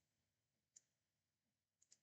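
Near silence with faint computer mouse clicks: one a little under a second in, then two in quick succession near the end.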